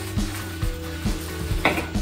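Plastic bag crinkling as a coil of foam cord gasket inside it is handled.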